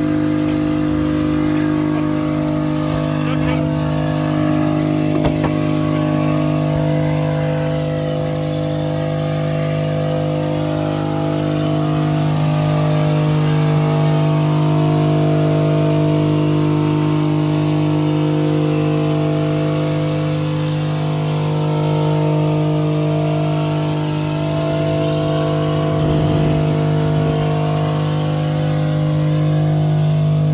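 First-generation Chevrolet Equinox V6 engine held at wide-open throttle by a pole jammed on the pedal, running at steady high revs. It is being run flat out deliberately to blow it up.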